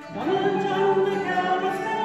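A small folk group singing together, several voices on held notes over fiddle and harp. The sound dips briefly at the very start, then the voices come back in together.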